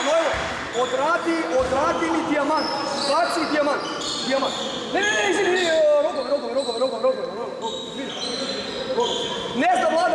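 Players' and spectators' voices calling out across a basketball gym during a dead ball, with sneaker squeaks on the court floor and a few ball bounces.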